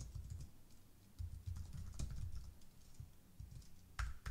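Faint typing on a computer keyboard: scattered, irregular keystrokes with a short lull about a second in.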